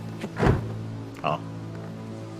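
A car door shutting with a deep thump about half a second in, over a steady music score.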